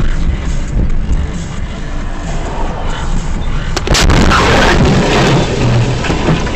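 Dashcam recording of a car driving, with engine and road noise and music, then a sudden loud crash about four seconds in, followed by a stretch of louder clattering noise.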